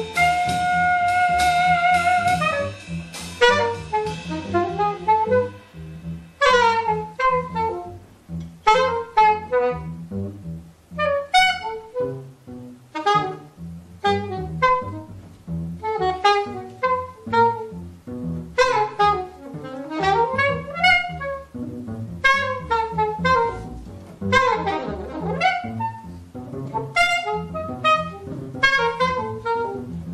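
Saxophone improvising live jazz over double bass: a held note with vibrato, then a string of short, quick phrases of rising and falling runs.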